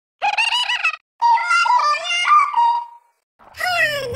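A very high-pitched voice, sounding sped up, squealing in two wavering bursts, a short one and then a longer one that slides around in pitch. After a short silence, music starts near the end.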